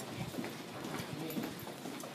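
Footsteps of several people walking on a hard hallway floor: a quick, irregular run of shoe steps.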